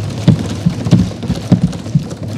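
Many people in a large chamber clapping and thumping desks: a loud, dense patter broken by irregular heavy thuds several times a second.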